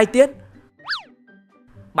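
Cartoon sound effect: a short whistle-like tone that sweeps quickly up in pitch and straight back down, about a second in.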